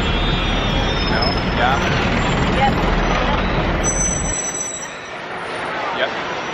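Busy city street traffic close by, with the low rumble of a nearby vehicle engine that drops away about four seconds in, and voices in the background.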